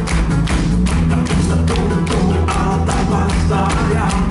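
Live rock band playing a song: drum kit keeping a steady beat under electric guitars and keyboards.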